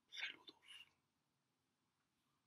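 A short whispered sound from a man, two breathy bursts in the first second, then near silence.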